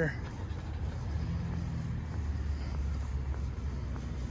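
A car engine's low, steady rumble, growing stronger about two seconds in and easing slightly near the end.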